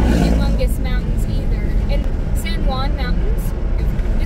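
Steady low road and engine rumble inside a moving car's cabin, with a short rush as a large truck passes the other way at the start. A voice talks over it.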